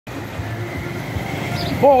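Street background noise with road traffic: a low rumble and a steady hiss, with a faint steady high tone. A man's voice starts near the end.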